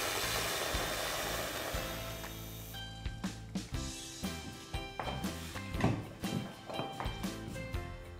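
Handheld milk frother whisking cold skim milk in a stainless steel frothing pitcher, a steady airy whirr that stops about three seconds in. Background music plays throughout and carries on alone after the frother stops.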